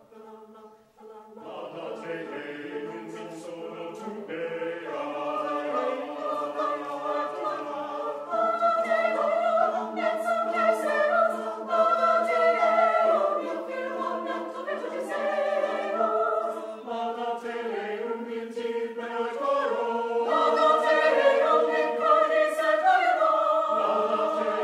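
Mixed-voice choir singing a cappella in several parts. After a short pause near the start the voices come back in and grow louder about a third of the way through.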